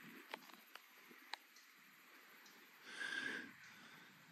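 Near quiet, with a few faint clicks in the first second and a half, then one short nasal breath, a sniff or snort, about three seconds in.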